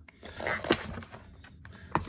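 Hands handling the contents of a cardboard product box: a short soft rustle with a light tap in the first second, then a sharper tap of something being gripped near the end.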